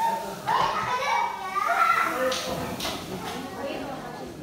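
Overlapping chatter of several people, children's voices among them, talking at once with no single clear speaker.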